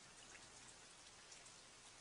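Near silence: a faint, even hiss with a few soft specks in it.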